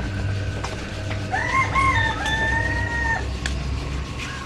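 A rooster crowing once, starting about a second in: a few short rising notes, then a long held note that lasts about two seconds in all.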